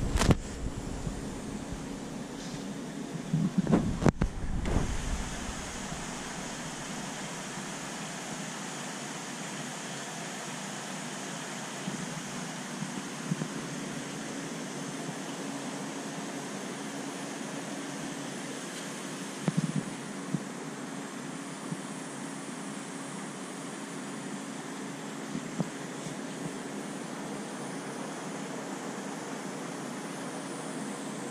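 Steady mechanical hum with an even hiss, with a few dull knocks about four seconds in and again near twenty seconds.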